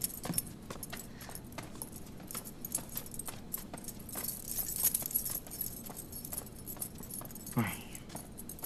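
A bunch of metal keys jangling as they are carried, a run of small bright clinks that is busiest about halfway through. A brief falling sound comes near the end.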